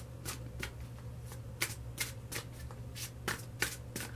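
A tarot deck being shuffled by hand: a run of sharp card snaps, about three a second, louder in the second half.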